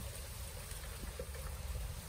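Low, steady rumble of wind on the microphone over a faint outdoor hiss, with a few faint ticks.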